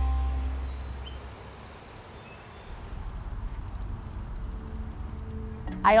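Soft background music fading out over the first two seconds, leaving quiet outdoor meadow ambience: a steady low rumble, a few faint short chirps and fine high ticking. A woman's voice starts at the very end.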